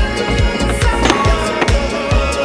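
Skateboard on pavement, with a sharp clack about a second in, over background music with a steady beat.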